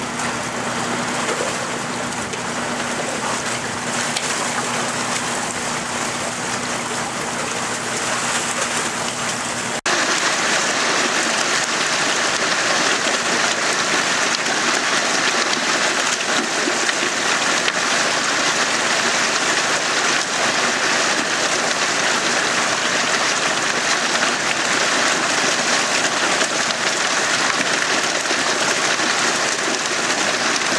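Churning, aerated water in a fish-transport tank full of trout, with a steady low hum beneath it. About ten seconds in it gives way to a louder steady rush of water and splashing as trout are flushed down a stocking chute into the lake.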